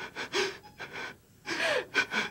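A woman sobbing: a run of short gasping breaths broken by brief, falling cries.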